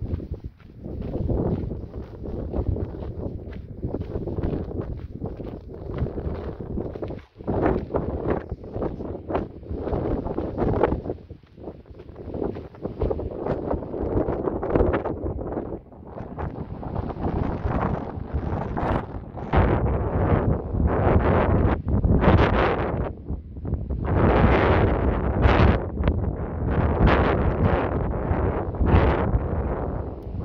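Gusty wind buffeting the microphone: a loud rumbling rush that swells and drops with each gust, growing stronger in the second half.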